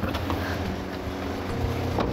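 A car engine running with a steady low rumble as the SUV stands at the kerb, under soft sustained background music.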